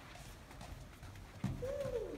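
A toddler's short hummed "mm", rising and then falling in pitch, about a second and a half in, after faint room tone.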